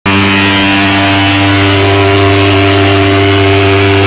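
Portable thermal fogging machine spraying insecticide fog, its pulse-jet engine running with a loud, steady buzzing drone.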